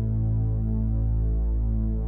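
A steady low hum with a slow throbbing beat in its tone.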